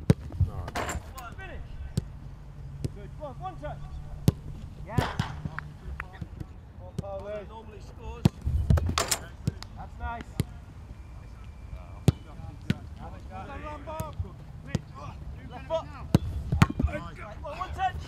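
Footballs being struck in a passing and shooting drill: irregular sharp thuds of boots kicking balls, a few seconds apart, with distant shouts between them.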